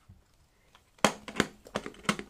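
Plastic bento lunch box being opened by hand: after a second of quiet, a quick run of sharp clicks and light clatter from its clip latches and lid.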